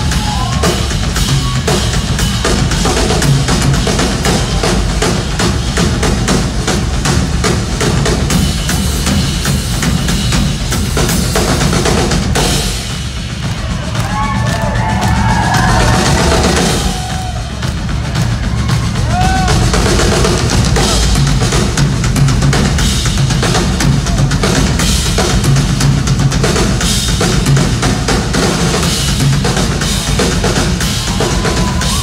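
Live rock drum kit solo: fast bass drum, snare and tom strokes with cymbals. About twelve seconds in, the cymbals stop and the playing thins for a few seconds before building back to full kit.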